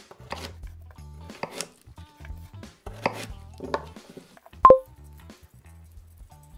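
Chef's knife cutting carrot pieces in half against a wooden cutting board, four strokes at irregular intervals through the first two-thirds. A short electronic two-tone beep, the loudest sound, comes about two-thirds of the way in.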